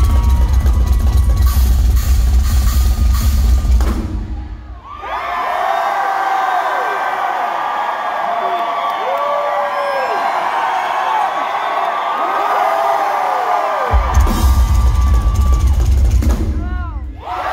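Drum solo on a rock drum kit, heavy on the bass drum, that stops about four seconds in. A crowd then cheers and whoops for about nine seconds before the drums come back in near the end.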